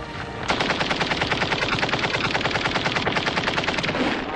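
Machine-gun fire: one long, rapid, continuous burst of shots that starts about half a second in.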